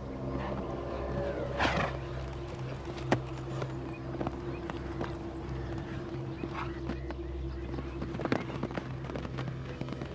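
Camargue stallions breathing hard and snorting, with the scattered knocks of their hooves, over a steady low drone. The loudest snort comes just under two seconds in.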